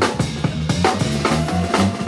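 Drum kit being played hard, with snare, bass drum and cymbal hits, over a bass guitar line that steps between low notes.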